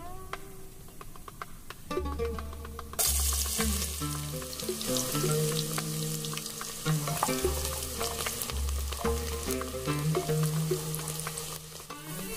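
Hot cooking oil sizzling in a pot: a faint sizzle of cinnamon pieces frying, then a sudden, much louder sizzle about three seconds in as chopped onion goes into the oil and fries. Background music with bass notes plays throughout.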